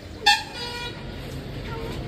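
A single short vehicle horn toot, starting sharply about a quarter-second in and fading away within a second, followed by faint voices.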